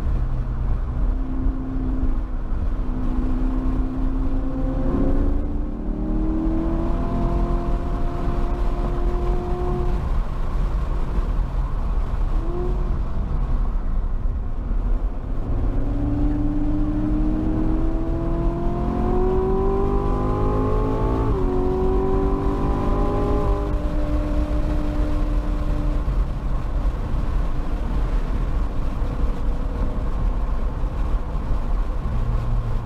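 Corvette V8 heard from inside the cabin at track speed, pulling hard with its pitch climbing. There is a sudden drop at an upshift about two-thirds of the way through, another climb, and then it eases to a steadier lower note. Steady road and wind noise runs underneath.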